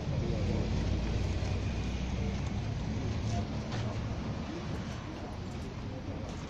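Low, steady rumble of a car engine idling, with faint voices in the background.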